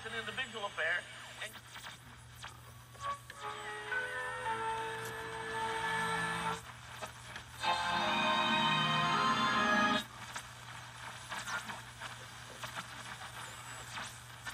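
Home-converted Pioneer TX-520 receiver being tuned slowly across the dial: warbling tuning whistles at first, then two stations with music and voices come in, about three seconds in and again near the middle, each fading back into quieter static as the dial moves on. A low steady hum runs underneath.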